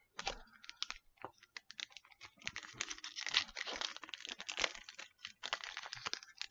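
A foil Pokémon TCG booster pack crinkling in the hands as it is handled and torn open, an irregular crackle that grows busier through the middle.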